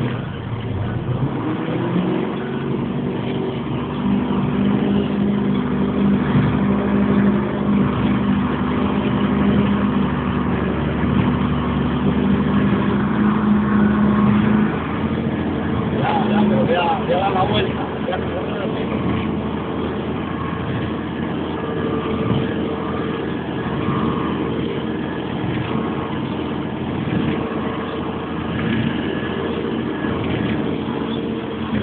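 Garbage truck engine running under load: its pitch rises about a second in, holds high and steady for roughly a quarter of a minute, then eases off and keeps running.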